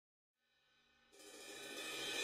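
Dead silence, then background music fading in about halfway through and swelling, led by a cymbal wash.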